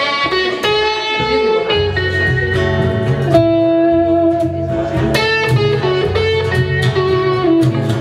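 Blues-rock instrumental break: an electric guitar plays a lead of held and bent notes over a strummed acoustic guitar, the low rhythm filling in about two seconds in.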